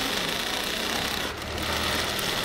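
Sewing machine running steadily, its needle stitching through patchwork cloth.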